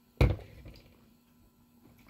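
A mug set down on a desk: one sharp knock a moment in, fading quickly.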